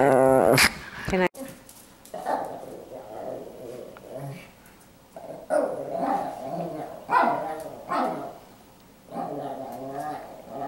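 Chihuahua growling and grumbling in a series of short bouts, separated by brief pauses.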